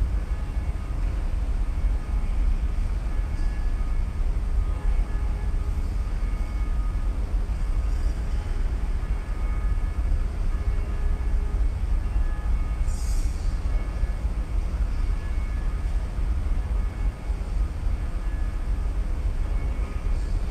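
A steady deep rumble with no break, with faint thin tones coming and going above it and a brief high jingle about thirteen seconds in.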